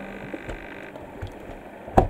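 Camera handling noise. A faint steady whine lasts for about the first second, then there is low rustling, and it ends in a sharp click.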